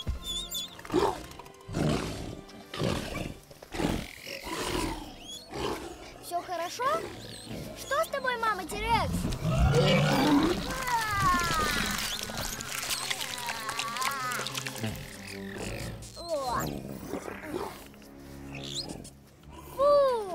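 Creature sound effects for a baby T. rex: roars and squealing calls over background music, coming thick and fast around the middle.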